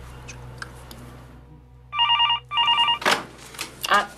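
Desk telephone ringing electronically: two short rings in quick succession, each about half a second long, about two seconds in.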